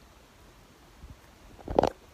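Quiet room tone, then near the end a brief, loud handling noise as the handheld camera is moved.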